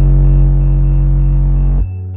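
Electronic music with a heavy sustained bass note played very loud through four Pioneer Premier subwoofers; the bass drops away sharply just before the end.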